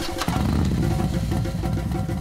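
Motorbike-like engine sound effect for a toy quad bike, starting just after a sharp click and running as a pulsing low rumble, with light background music underneath.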